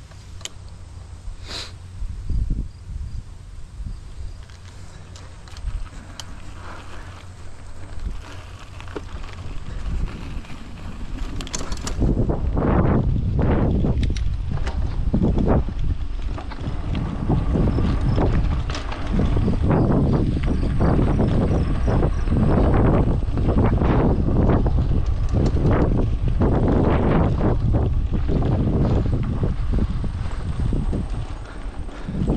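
Wind buffeting the microphone of a camera moving along a dirt trail, with the rumble and rattle of travel over the rough ground. It is fairly quiet with a few clicks at first, then becomes a loud, steady, jolting rumble from about twelve seconds in.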